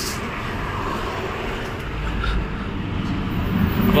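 Steady low rumble of road traffic, growing slightly louder near the end.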